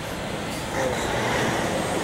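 City street traffic noise, a steady rush of passing vehicles that swells about a second in.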